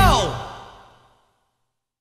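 The final held chord of a heavy metal band slides steeply down in pitch as a whole and fades away within about a second, ending the song in silence.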